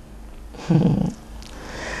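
A woman's brief low closed-mouth hum, an 'mm', about two-thirds of a second in, over a steady low background hum.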